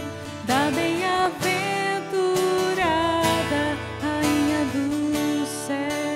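Catholic worship song sung to acoustic guitar accompaniment, the voice holding long, steady notes with short slides between them.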